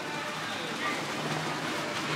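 Hookah (shisha water pipe) bubbling as a man draws smoke through its hose, with faint voices in the background.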